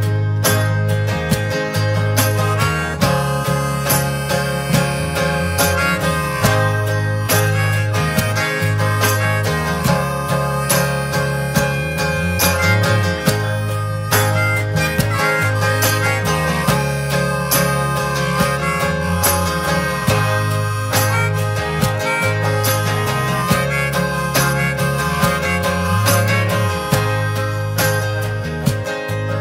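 Live folk band playing an instrumental passage: a harmonica played from a neck rack over strummed acoustic guitars, with steady low notes underneath.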